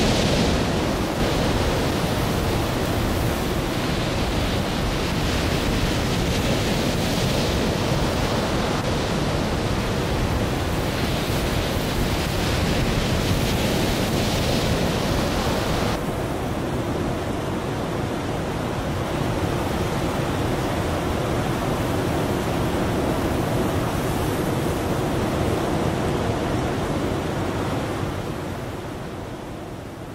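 Strong wind and sea surf: a steady rushing noise, with wind buffeting the microphone and waves breaking. About halfway through it changes abruptly and loses some of its hiss, then it fades out near the end.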